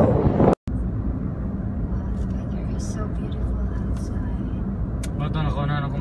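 Steady road and engine noise of a car driving, heard from inside the cabin. A voice is heard briefly at the start, and faintly again near the end.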